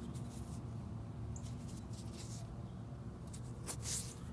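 Faint scratchy rustling of fingers handling and rubbing a small dug-up silver coin and the soil on it, with a slightly louder scrape near the end, over a low steady background hum.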